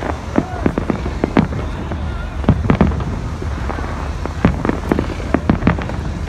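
Aerial fireworks going off: an irregular series of sharp bangs and pops, about a dozen in six seconds, some in quick pairs, over a steady low rumble.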